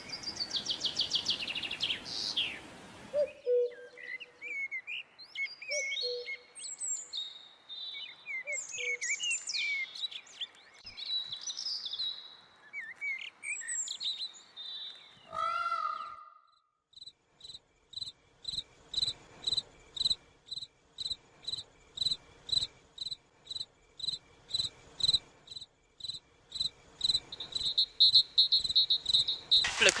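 Birds chirping and calling in the open, with many short rising and falling chirps. About halfway through, a steady call starts that pulses about twice a second and sounds like an insect.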